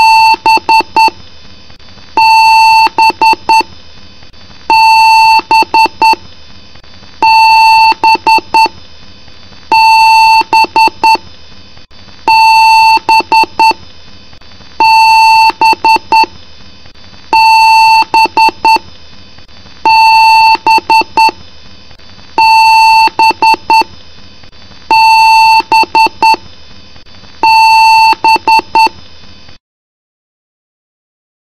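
A PC motherboard speaker sounding a repeating BIOS beep code: one long beep followed by a few quick short beeps, the pattern repeating about every two and a half seconds, then cutting off just before the end.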